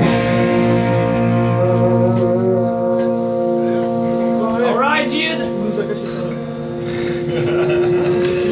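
Amplified electric bass and guitar holding a sustained chord through their amps, with a note that slides upward about halfway through.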